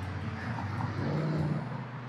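Steady low hum of road traffic, swelling slightly in the second half.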